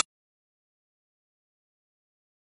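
Dead silence: a last fragment of background music cuts off right at the start, then nothing at all, not even room tone.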